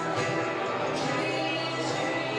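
A live band playing a song with guitars, steady throughout.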